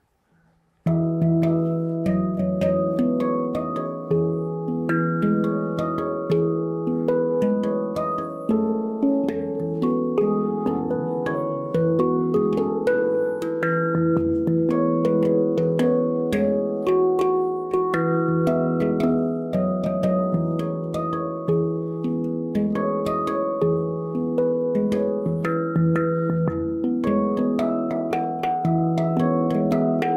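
Steel handpan played with the fingertips: a holiday tune of struck, ringing notes that overlap and sustain, over a low note sounded again and again. It starts about a second in.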